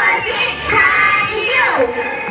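Children's voices singing.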